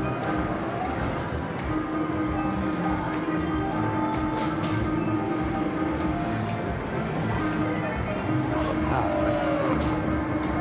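Buffalo Ascension video slot machine playing its reel-spin music and galloping hoofbeat effects over several spins, a steady held tone running underneath.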